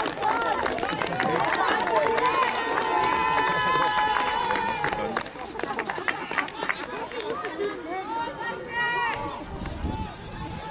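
Several voices shouting and cheering at once in celebration of a goal. The shouting is dense at first, thins out about halfway through, and a few separate calls come near the end.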